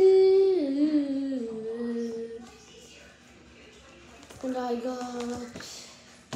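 A child's voice singing long wordless notes: one held note that slides down in pitch over about two seconds, then a shorter, lower held note about four and a half seconds in.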